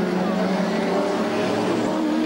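Group A Holden Commodore V8 race cars running hard on the track, a loud steady engine note that dips slightly in pitch near the end.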